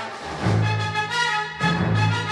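Orchestral trailer music with brass and timpani. A low held note enters about half a second in and another comes in near the end.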